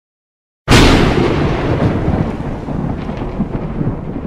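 A sudden loud crash just under a second in, followed by a low rumble that slowly dies away, like a thunderclap.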